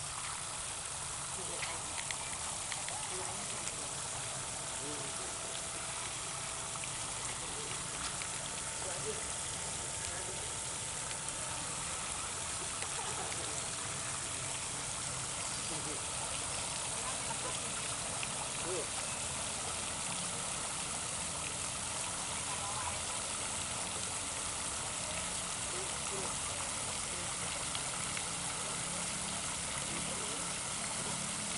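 Fountain water jets spraying and splashing into a stone basin, a steady even rush.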